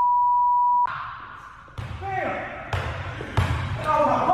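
A steady, high, single-pitched censor bleep, about a second long, that blanks out all other sound. After it come quieter voices and the bounces of a basketball from the game footage.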